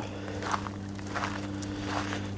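Footsteps on gravel, a few soft steps over a steady low hum.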